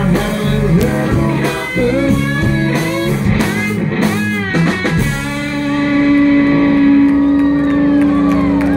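Live rock band, with electric guitars, bass guitar and drum kit, playing loudly through a stage PA. About five seconds in the playing gives way to one long held chord that rings on.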